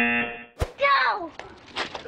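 Game-show elimination buzzer: a flat, steady electronic buzz that cuts off about half a second in, sounding the player out. A sharp thump follows.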